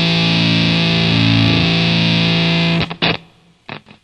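Heavily distorted electric guitar playing sustained, droning chords in a grindcore jam. It breaks off about three seconds in, with a few short stabbed hits and a brief near-silent gap as one track ends.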